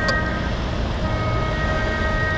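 Fishing boat's diesel engine running with a steady low rumble as the boat gets under way. Over it there is a steady high tone that breaks off about half a second in and returns about a second in.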